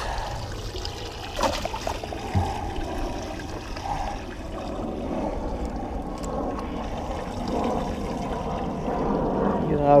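Water trickling and pouring steadily, with a couple of brief knocks in the first few seconds.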